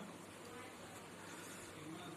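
Faint steady background hiss with a low hum: room tone, with no distinct strokes or knocks.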